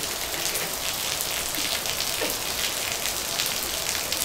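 Steady rain falling, an even hiss of dense drops with no letup.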